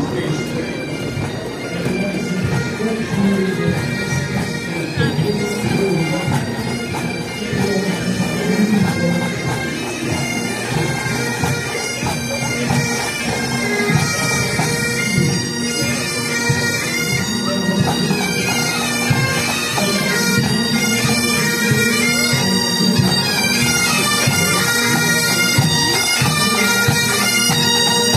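A pipe band's bagpipes playing a march tune over their steady drones, growing louder as the band approaches.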